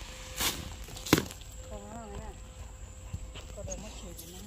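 Footsteps and handling knocks as someone walks over dry garden soil carrying a hose, with one sharp knock about a second in. A brief wavering voice is heard in the middle.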